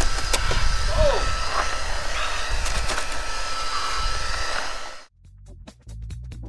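Ice being scraped and broken off a frosted car window, with scratchy scraping strokes over wind rumble on the microphone and a steady thin whine underneath. It cuts off suddenly about five seconds in, giving way to music.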